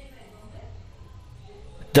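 A pause in a man's spoken narration, filled with a faint low hum of room noise. His voice comes back right at the end.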